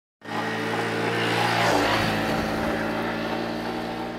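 Honda Super Cub 50's small single-cylinder four-stroke engine running steadily on the road, its note shifting lower a little under two seconds in.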